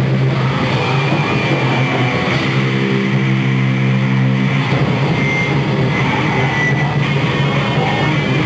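A rock band playing live: electric guitars, bass and drums, loud and dense, with a chord held from about two seconds in until nearly five.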